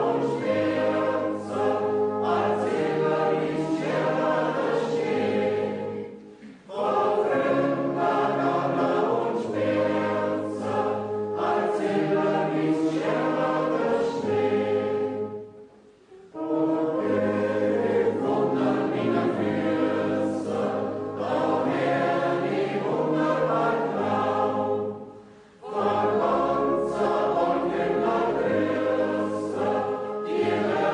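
Background choral music: a choir singing sustained phrases over a low bass line, breaking off briefly three times between phrases.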